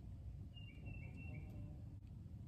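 A bird calling faintly: one thin high whistle held for about a second, with three short lower chirps beneath it, over a low rumble.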